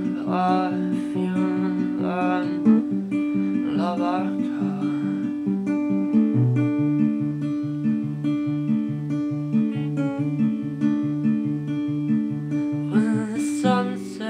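Acoustic guitar played in a steady picked pattern between sung lines. From about halfway through, a low bass note repeats about twice a second beneath ringing higher notes.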